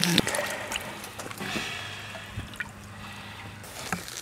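Swimming-pool water sloshing and trickling, with a faint steady low hum underneath.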